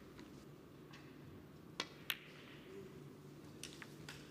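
Two sharp clicks of a snooker shot about a third of a second apart: the cue tip striking the cue ball, then the cue ball hitting the object ball. A few fainter ball clicks follow near the end.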